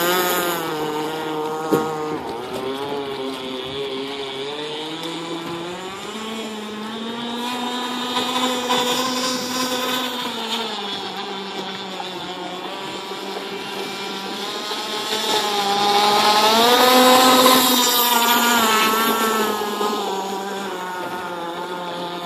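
Radio-controlled Pro Boat Rockstar 48 catamaran running across the water, its brushless electric motor whining, the pitch dipping and rising with the throttle and loudest about sixteen to eighteen seconds in. A single sharp click sounds about two seconds in.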